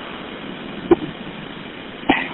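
Steady car-cabin road and engine noise heard over a 911 phone call, with one brief click about a second in.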